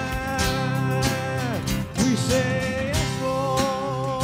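Worship band playing an instrumental passage with guitars over a steady beat; about one and a half seconds in a sustained note slides down, and a new note comes in soon after.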